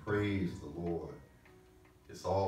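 A man's voice speaking for about a second, then a quiet pause.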